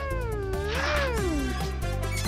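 A high vocal cry that wavers up and down in pitch, then slides downward and stops about one and a half seconds in, over background music.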